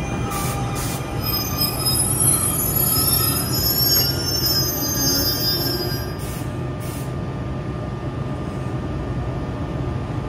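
NJ Transit Arrow III electric multiple-unit train slowing along the platform, with high-pitched squealing as it brakes to a stop over the first six seconds or so. Under it runs a steady low hum from the train, and there are a few short hisses.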